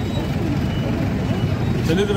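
A man speaking in Telugu into press microphones over a steady low rumble of road traffic.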